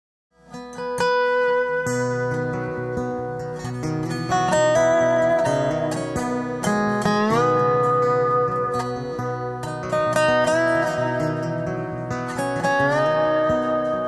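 Instrumental intro on dobro: plucked notes with sliding glides up into held notes, over a steady low plucked-string accompaniment. It starts about half a second in.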